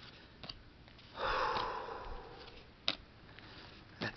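A person sniffing once through the nose, a breathy rush about a second long starting about a second in, with a single short click a little before the end.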